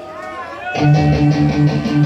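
Live punk rock band kicking into a song about three quarters of a second in: electric guitars and bass chugging in rapid, even pulses with drums and cymbals, loud and full. Before it, a voice over crowd noise.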